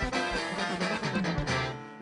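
Live norteño-style corrido band playing a short instrumental fill between sung lines, with accordion and strummed strings over a bass line.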